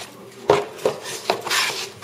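A cardboard box and packaging being handled on a table: three sharp knocks and clatters less than half a second apart, then a longer scraping rustle near the end.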